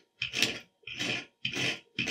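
Knife blade scraping a stranded copper conductor from a Category 6 cable in three short strokes about half a second apart. The scraping tests whether the strands are solid copper rather than copper-clad aluminium.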